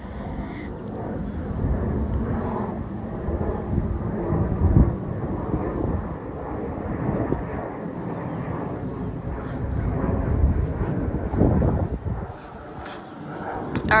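A Southwest Airlines Boeing 737 jet airliner passing overhead, its engines a broad, steady rumble that swells and eases and drops away about twelve seconds in.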